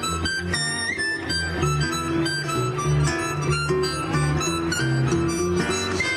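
Texas swing instrumental break: a harmonica plays the lead over a harp guitar's chords and bass notes, in a steady swing rhythm.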